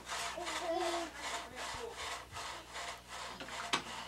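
Repeated scraping strokes, about four a second, with a sharper click near the end.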